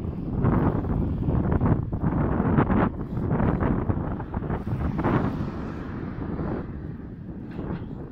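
Wind buffeting a phone's microphone while it moves along the street: a loud, uneven rumble in gusts that eases off in the last couple of seconds.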